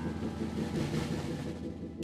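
Street traffic noise, a steady hiss that swells about a second in and fades, over a faint low hum.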